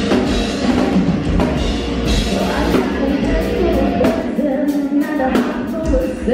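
Heavy metal band playing live, loud: a drum kit pounding under the band, with a woman's singing voice coming in about halfway through.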